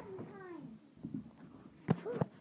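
A person whimpering: short whining cries that slide down in pitch, then a sharp click near the end.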